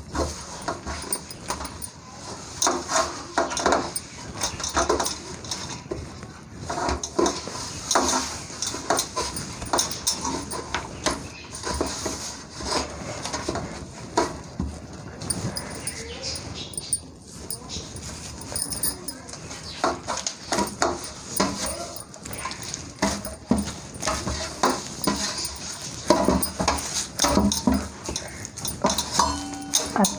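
Hands kneading soft flour dough in a stainless steel plate: irregular squishing, pressing and knocking of the plate, with short pauses.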